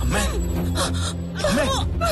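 Dramatic background score with a steady low drone, over which a person gasps; a voice starts calling out "Amme" near the end.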